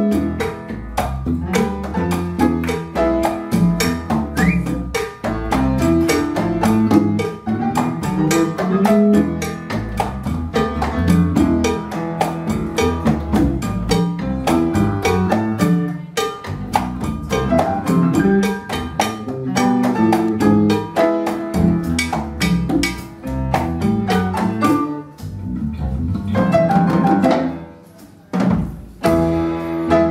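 A live Afro-Cuban jazz combo playing: conga drums, electric bass guitar, piano and drum kit. The band drops out briefly about two seconds before the end, then comes back in.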